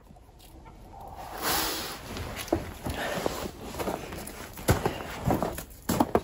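Backyard chickens clucking, with scuffing and a few knocks from movement on the sand.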